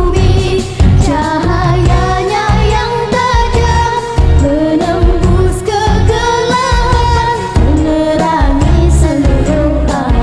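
A girl singing a melody into a microphone over a loud backing track with a steady beat.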